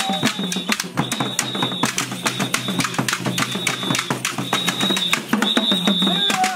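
Acholi traditional dance music: fast, dense drumming, with a high held note that sounds about once a second.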